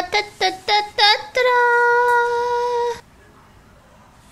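A high singing voice: a few short sung notes, some bending in pitch, then one long held note that cuts off suddenly about three seconds in, leaving only faint room noise.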